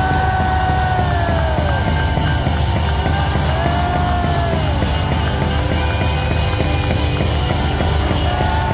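Live band playing loud, dense, noisy music: a rumbling wash with gliding pitched tones that swell and fall every second or two.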